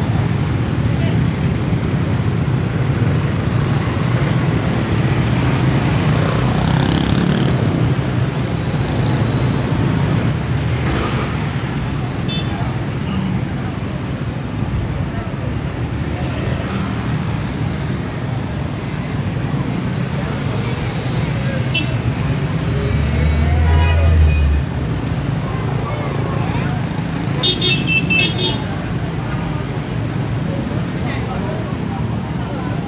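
Street traffic, mostly motor scooters and cars passing close by in a steady low rumble, with people's voices mixed in. One vehicle passes louder about three-quarters of the way through, and there is a short, high horn-like sound near the end.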